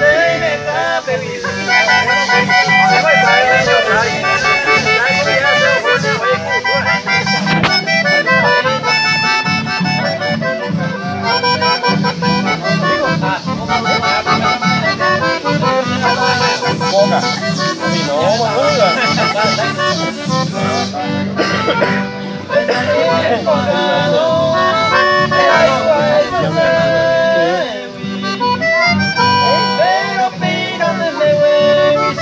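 A Paraguayan polka played live on a piano accordion, which carries the melody, over strummed acoustic guitars keeping a steady rhythm.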